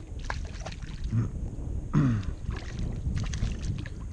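Small largemouth bass splashing at the water's surface as it is reeled in beside a kayak: a few short splashes over a steady low wind rumble on the microphone.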